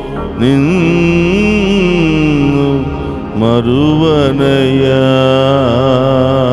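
A man singing a Telugu devotional hymn to Jesus into a microphone, in long held phrases with a short break about three seconds in.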